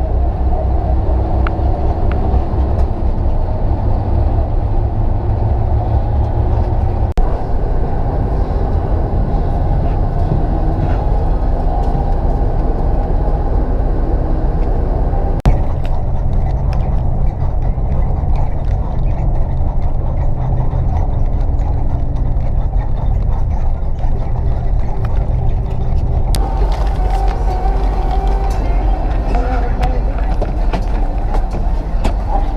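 Steady engine and road rumble heard inside the cabin of a moving bus, heavy in the low range. The rumble changes abruptly three times, about 7, 15 and 26 seconds in.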